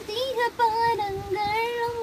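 A young woman singing a Christian devotional song solo and unaccompanied: a short ornamented turn in the first half, then a long held note.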